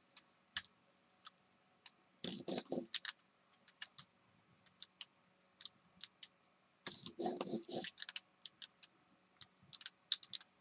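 A hand brayer rolled back and forth over tacky paint on a gel printing plate, giving scattered sharp clicks and two rolling passes of about a second each, about two seconds in and again about seven seconds in.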